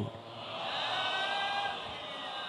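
Faint murmur of voices over steady background room noise.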